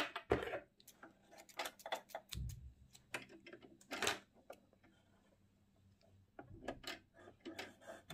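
Scattered light clicks and small clatters of the presser foot and its lever being handled on a Singer C5205 sewing machine, as the foot is being taken off to fit a blind-hem foot. A short low rumble comes about two and a half seconds in.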